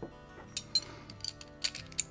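Light metallic clicks and clinks of Tokarev TT-33 steel pistol parts being handled and fitted back together, several spread over the two seconds, the loudest near the end, over soft background music.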